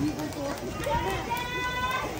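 People's voices talking, with a high voice drawn out for about half a second near the end.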